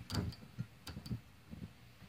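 Faint, irregular ticking and snapping, about half a dozen short clicks, as two thin copper wires on a hand-cranked washing-machine motor generator touch and arc on its AC output.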